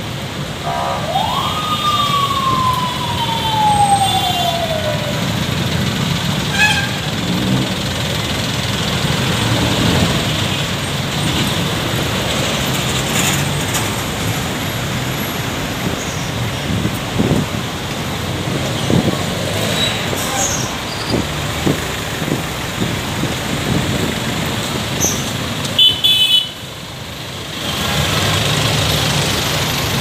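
Busy city street traffic noise with vehicles passing, and a single siren wail about a second in that rises quickly and then falls slowly over about four seconds. The traffic noise drops out briefly near the end, then returns.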